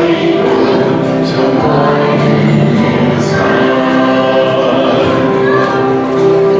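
Young children's choir singing together in a steady, sustained melody.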